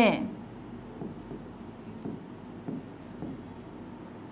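Marker pen writing on a board: a scratchy rubbing with a few light taps as the letters are drawn.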